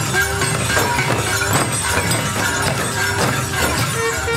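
Traditional Bastar festival band: drums struck in a steady rhythm of about two beats a second, with metallic clashing and a reed horn with a brass bell playing held notes.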